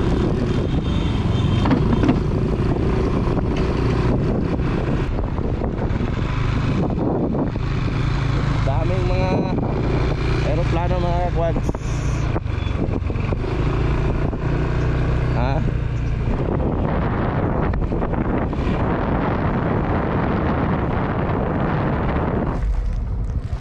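Motorcycle engine running steadily while riding, with road and wind noise over the camera microphone.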